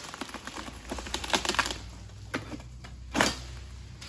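Pole sickle cutting and dragging at an oil palm frond: a rapid run of crackling and snapping from the frond, then two sharp swishes of fronds, the louder near the end.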